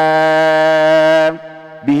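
A man's solo chanting voice holds one long steady note at the close of a line of an Arabic xasida (devotional poem). It breaks off after about a second and a quarter, and a brief pause for breath follows before he starts the next line near the end.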